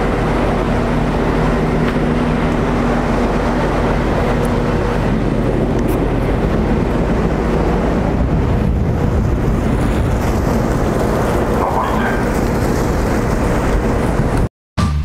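Steady hum of a ship's machinery under a constant rush of wind and sea on the open deck; one low tone in the hum drops out about five seconds in.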